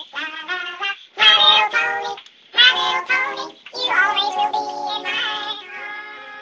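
Music with a high-pitched sung melody in short phrases separated by brief pauses, moving into a long held note near the end.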